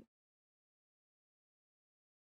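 Near silence, with no audible sound at all.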